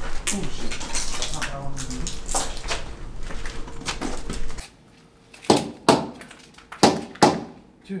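People walking through a hallway, with muffled voices and a steady low rumble of camera handling. About halfway through the background cuts out suddenly, and four sharp knocks follow, spaced half a second to a second apart.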